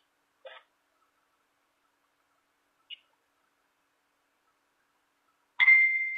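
Near silence on a phone-call line for most of the time, with two faint brief clicks early and midway. Near the end comes a sudden louder sound carrying a steady high tone, just before speech resumes.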